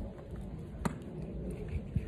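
A handbag with metal hardware being handled: one sharp click a little before halfway through and a fainter one near the end, over a low background rumble.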